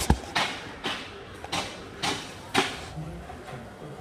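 Handling noise: a sharp click, then about five short rustling scrapes about half a second apart, as the phone and small plastic containers are moved about.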